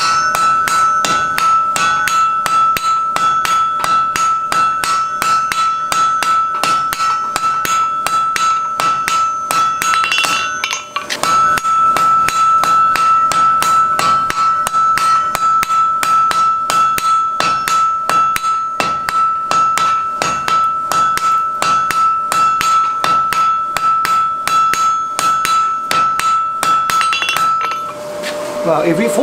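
Rapid, evenly paced hammer blows on white-hot mild steel on an anvil, welding the two halves of a double cleft weld, with a steady ring from the anvil under the blows. A brief pause comes about ten seconds in.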